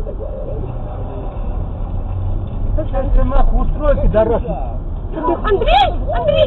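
Steady low road and engine rumble inside a moving car on a highway. A person's voice talks over it from about three seconds in.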